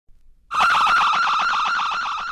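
A lone electric guitar opening a garage punk song: about half a second in it starts one high note, picked rapidly over and over so that it wavers like an alarm.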